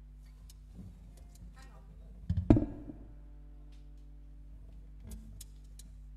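Handling noises: light clicks and knocks, with one loud knock about two and a half seconds in that rings briefly, and a smaller one near the end. A steady electrical hum runs underneath.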